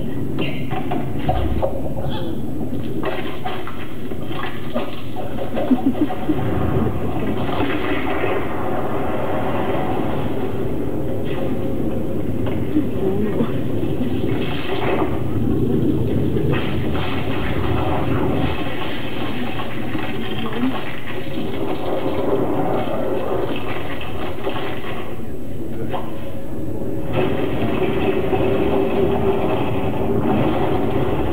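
Soundtrack of an animated film played over loudspeakers in a dark room: a continuous, dense rush of sound effects, with a few short knocks about six seconds in.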